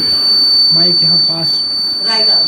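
A boy speaking briefly into a handheld microphone, a few short syllables in the middle, over a steady high-pitched electronic whine that holds one pitch.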